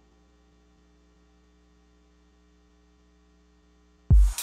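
Near silence with a faint, steady hum.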